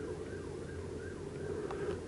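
Distant emergency-vehicle sirens, faint, their pitch rising and falling, over a low steady background noise.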